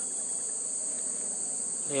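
Insect chorus: a steady, high-pitched shrill drone that does not change.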